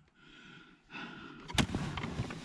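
A hand tool prising at a plastic seat-rail trim cover: light scraping and handling noise, with one sharp click about one and a half seconds in.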